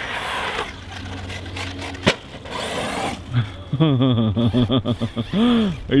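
A radio-controlled desert buggy on a 6S battery running over a dirt track, with a single sharp knock about two seconds in. From about halfway a man laughs loudly.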